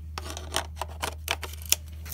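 A quick run of light clicks and taps as a Helios-44-2 lens on an M42-to-Canon adapter is fitted to a Canon camera body and handled, the sharpest click near the end.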